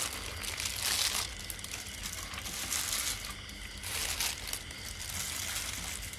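Chopped green onion and herbs dropping into a mixing bowl and being tossed through the salad with a spoon: soft, irregular rustling in several short bursts.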